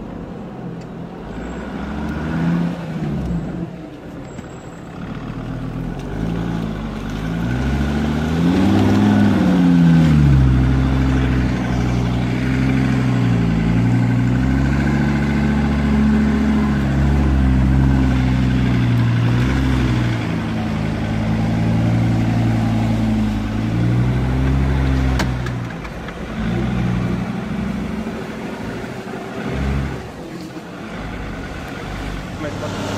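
Off-road vehicle's engine working hard up a muddy dirt track, its revs rising and falling again and again, with a strong rise about nine seconds in.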